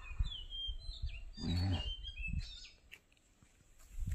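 Birds singing a string of short whistled notes that slide up and down, stopping about halfway through, over a low rumble of handling on a handheld phone microphone; a brief low hum stands out about a second and a half in.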